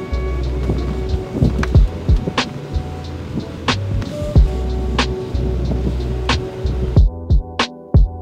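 Background music with a steady beat: a deep bass line, held tones and regular drum hits, thinning out near the end.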